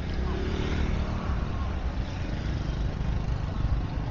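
Busy street traffic: a motor scooter passing close, over a steady rumble of traffic and faint background voices.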